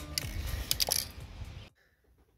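A few sharp clicks from handling, over a steady background hiss, until the sound cuts out abruptly about three-quarters of the way through.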